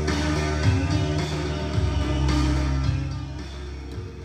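Rock music with guitar, bass and drums playing from a cassette on a Realistic SCT-14 tape deck, sounding nice and clean. The volume eases down over the last second or so.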